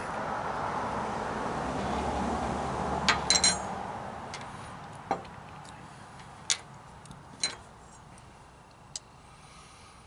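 A passing vehicle's steady noise, loudest in the first few seconds and then fading away. A few light clicks and a short ringing clink, about three seconds in, sound over it.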